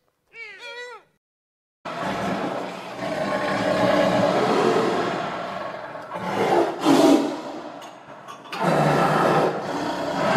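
A deer gives one short, high call that rises and falls in pitch near the start. After a brief silence a cheetah makes a long, rough, noisy call that swells about seven seconds in, breaks off briefly around eight seconds, then carries on.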